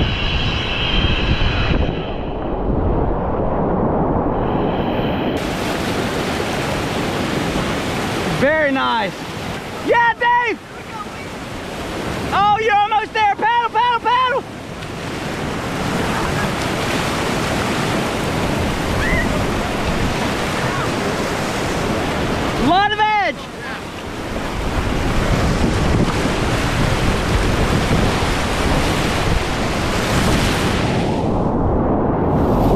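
Whitewater rapids rushing and splashing around a kayak, close to the microphone, with wind buffeting it. Short shouted whoops cut in about nine and ten seconds in, a wavering run of them around thirteen seconds, and one more near twenty-three seconds.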